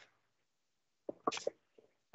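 A person's brief, sharp vocal noise about a second in, made of a few quick bursts of breath and voice.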